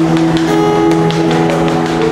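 Acoustic guitar playing sustained chords, several notes ringing on together with light picking clicks.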